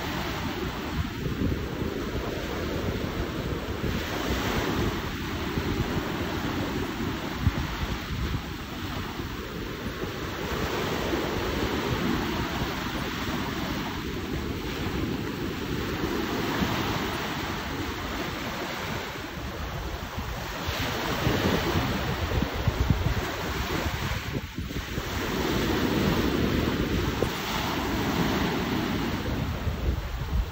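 Small sea waves washing in at the shoreline, the wash swelling every few seconds, with wind buffeting the microphone in a steady low rumble.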